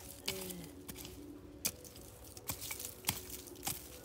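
Small hand hoe chopping into dry, clumpy soil to dig up potatoes: about five sharp, irregularly spaced strikes.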